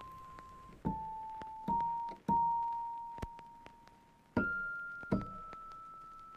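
Background music: slow single notes on an electric piano, each struck and left to ring and fade, about five in a row, the last two higher.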